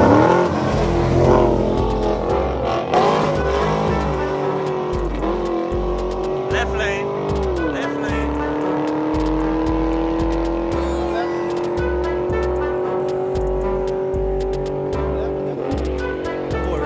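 Two Chevrolet Camaro V8s at full throttle in a street race, pulling away. Their engine note climbs, drops sharply at upshifts about five and eight seconds in, then rises slowly in the next gear. A pulsing bass beat of music runs underneath.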